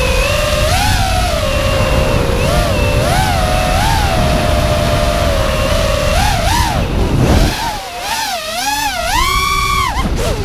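Brushless motors of an FPV racing quadcopter (Scorpion 2204/2300 motors spinning DAL T5040 V2 three-blade props), heard from the onboard camera: a buzzing whine whose pitch rises and falls with the throttle, over wind noise on the microphone. Near the end it drops briefly, then climbs in quick surges to a high whine that cuts off suddenly.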